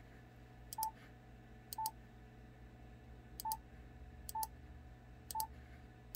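Yaesu FTDX10 transceiver's touchscreen keypad beeping at each key press as a frequency is keyed in. There are five short, mid-pitched beeps, each with a light tap, about a second apart with a longer pause after the second.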